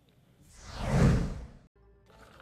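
A whoosh sound effect: a swell of noise that builds for about half a second, peaks, then fades and cuts off. It marks a transition between news items. Faint music starts near the end.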